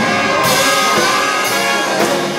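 Jazz big band playing, its brass section of trumpets and trombones sounding together in full ensemble, with a sharp accent right at the start.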